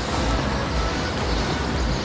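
Steady outdoor background noise: a low, uneven rumble under an even hiss, with no single clear source standing out.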